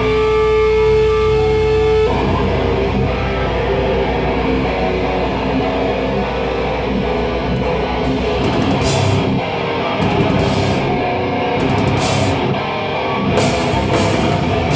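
Hardcore punk band playing live at full volume: one held note for about two seconds, then distorted electric guitars, bass and drum kit come in together, with crash cymbal hits from about eight seconds in.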